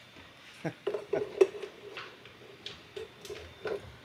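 Irregular clicks, taps and knocks of handling close to a microphone as a power cable is plugged into a battery, with a few louder knocks about a second in.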